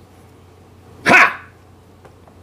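One short shouted call from a man's voice, about a second in.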